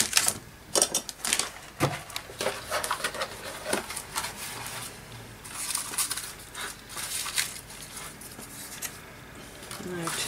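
Paper rustling and shuffling, with scattered light clicks and taps, as loose papers and ephemera are rummaged through on a tabletop. The rustling is briefly louder a little past the middle.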